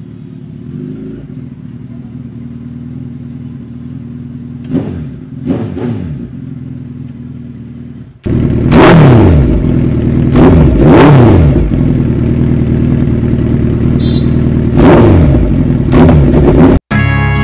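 Suzuki Hayabusa's inline-four engine idling with two short throttle blips about five seconds in. It then runs much louder for the second half, revved sharply several times, each rev rising and dropping back to idle.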